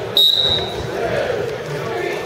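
Referee's whistle, one short blast of about half a second, starting the wrestling bout, over the chatter of the crowd.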